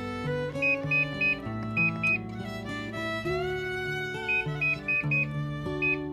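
Short, identical high beeps from an air fryer's touch control panel as its buttons are pressed to set the temperature and timer. There are about ten of them, in two runs, over steady background music.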